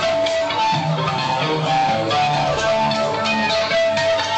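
Thrash metal band playing live and loud: distorted electric guitars riffing over drum hits, with a dense, steady wall of sound.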